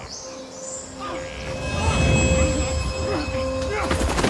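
Tense dramatic score and sound design: a steady held tone throughout, with a low rumble swelling in about two seconds in and short sliding pitch glides over it.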